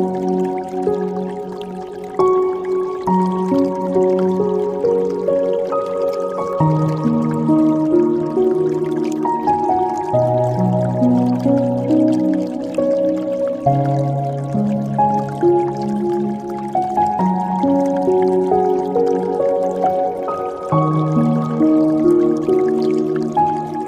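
Slow, soft meditation piano music with long held, overlapping notes, over faint dripping and trickling water.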